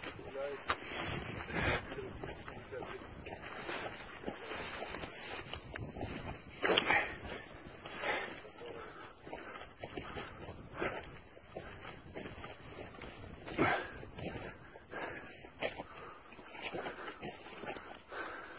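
Indistinct, low voices in short scattered bursts, the loudest about 7 seconds and 13 seconds in, over a faint outdoor background.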